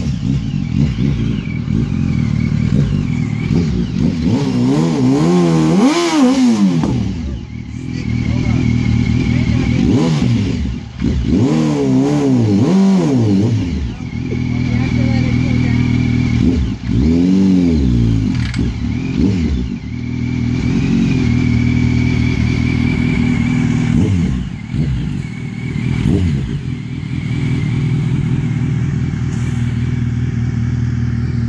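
Sport motorcycle engine revved hard again and again for a burnout: several rising and falling rev sweeps over a steady running note, with a thin wavering high squeal coming and going.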